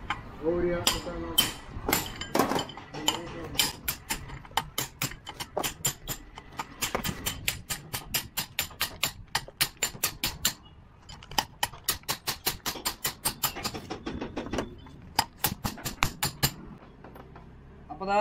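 Hammer blows in quick succession on the top of a truck differential bevel pinion shaft held in a vise, driving its bearing down onto the shaft: about three or four sharp metallic strikes a second, with two short pauses, stopping shortly before the end.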